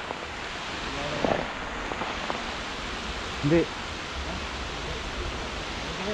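A steady outdoor rushing hiss, with a single short spoken word about halfway through.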